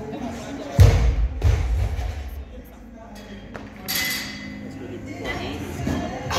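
Heavy barbell clean with bumper plates: a loud, deep thud about a second in as the 95 kg bar is received at the shoulders, with a second knock shortly after. Faint voices of the gym are heard around it.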